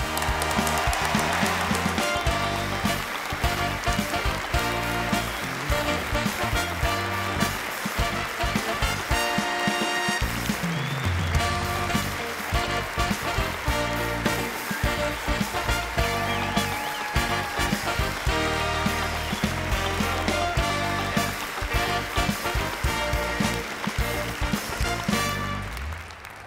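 A live band playing walk-on music with a steady beat, over an audience's applause.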